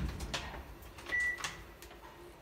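Lift with its doors standing open at a landing: a few light clicks, then one short, high electronic beep a little past a second in.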